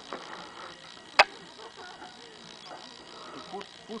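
A single sharp knock a little over a second in, the loudest sound here, with faint voices in between.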